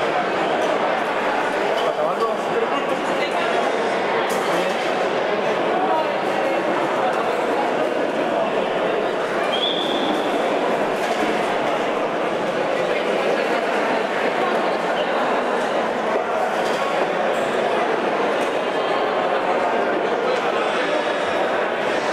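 A crowd of many voices talking and calling out at once, a steady babble echoing in a large indoor hall.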